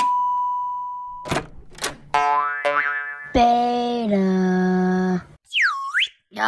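A string of cartoon sound effects. A steady electronic beep from the pressed button stops about a second in, followed by two clicks and a falling run of tones. Then comes a long held buzzy tone that drops in pitch partway through, and a swooping boing near the end.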